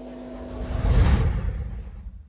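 A whoosh sound effect with a deep rumble. It swells to its loudest about a second in, then fades away.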